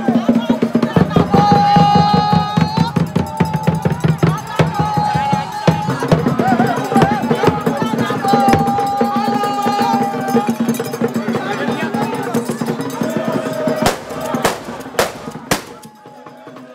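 Traditional drumming: fast, dense strokes on drums beaten with sticks, with voices chanting and holding long notes over it. It thins out in the last two seconds, leaving a few sharp knocks.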